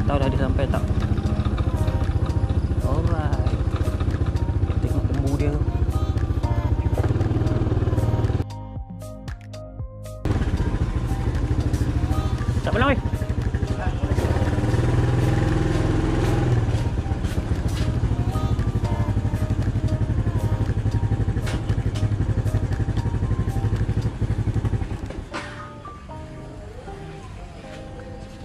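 Motor scooter engine running during a ride, with wind and road noise on the microphone, under background music. The ride noise cuts out briefly about nine seconds in, and it falls away near the end as the scooter stops.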